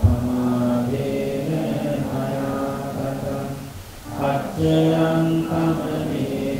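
A Buddhist monk chanting solo into a microphone, in long held notes, pausing for breath about four seconds in and then resuming louder.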